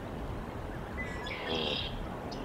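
Canada goose goslings peeping: a short high chirp about a second in, then a louder high call near the end, over steady outdoor background noise.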